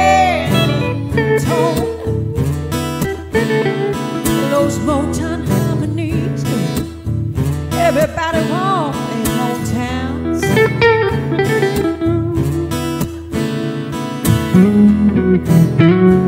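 Live music: a guitar playing with a woman's sung, gliding vocal lines over it; near the end she stops and the guitar carries on louder on its own.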